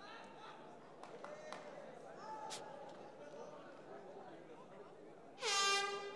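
Faint murmur of an arena crowd with scattered distant voices. About five and a half seconds in there is a short horn blast: one steady tone that dips slightly in pitch as it starts and lasts about half a second.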